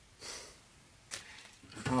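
Quiet handling noise from a wooden board being carried: a short soft rustle near the start and a light click about a second in. A man's voice starts right at the end.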